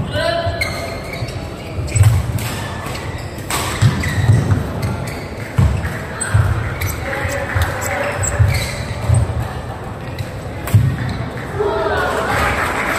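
Badminton rally: several sharp racket strikes on the shuttlecock, short squeaks of shoes on the court mat, and thudding footfalls as the players move.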